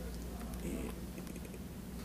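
A few faint, light clicks and taps over a steady low hum in a quiet room.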